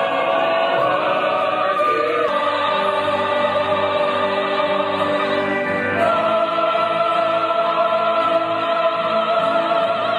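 Mixed choir of young women and men singing long held chords in harmony, the upper voices wavering with vibrato. The chord changes about two seconds in and again about six seconds in.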